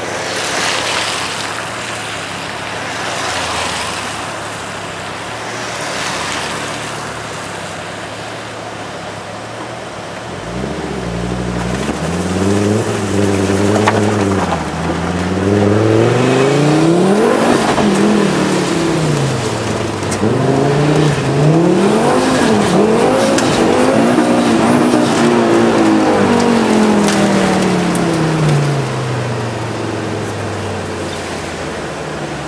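A Fiat Coupe driven hard on track. After a windy hiss at the start, the engine revs up through the gears from about a third of the way in, its pitch climbing and dropping back at each shift. It is loudest in the middle as it passes close, then a long falling note as it slows near the end.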